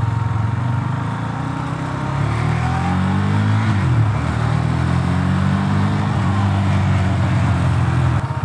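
KTM Duke 390 single-cylinder engine pulling hard as the motorcycle accelerates. The revs climb, dip and climb again about four seconds in, then hold steady.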